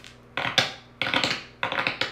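A deck of tarot cards being shuffled by hand: three quick bursts of cards slapping and riffling, each about half a second long.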